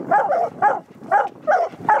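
Several hounds barking at the foot of a tree, a quick run of short barks about three a second: the treed bark of hounds that have run their quarry up a tree.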